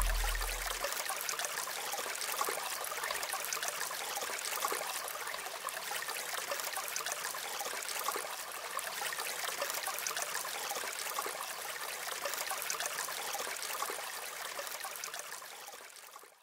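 Running water, the steady rushing and splashing of a stream or cascade, which fades out near the end.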